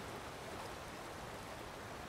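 Steady, faint rush of a shallow river running over rocks.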